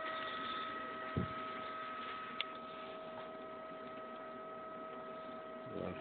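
Steady electrical hum with a thin, constant high whine at two pitches from a powered-up Zeiss Humphrey Atlas corneal topographer, with a soft thump about a second in.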